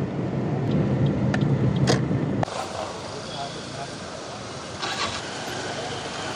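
Large diesel bus engine running close by in slow traffic, a low steady rumble. About two and a half seconds in it cuts off suddenly to a quieter street background.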